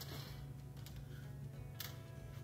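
Faint background music with three light clicks about a second apart, the first followed by a brief sliding sound, as drafting tools (scale ruler, straightedge) are handled on the drawing board.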